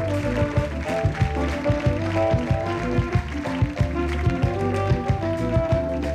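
Live studio band playing an upbeat tune with a steady drum beat, bass line and held melody notes.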